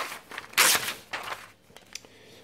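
A paper page in a notepad folio being flipped over: a short rustle, then a louder papery swish a little over half a second in, followed by a few lighter rustles and a tick.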